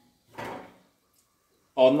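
A brief scrape of a wooden spatula across the bottom of an aluminium pressure cooker while stirring whole spices in oil, about half a second in, then quiet until speech starts near the end.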